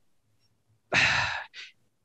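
A man sighs once about a second in, a half-second breathy exhale followed by a shorter, fainter breath.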